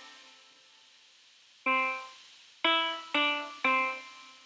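Sequenced notes from a GarageBand software instrument, triggered by an Adafruit UNTZtrument MIDI step sequencer. After a gap of about a second and a half, one note sounds, then three more follow about half a second apart, each with a sharp start and a fading tail.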